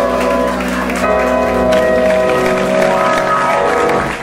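A live band of guitars, drums and voice ending a Konkani song on a long held chord that fades out near the end, with some applause.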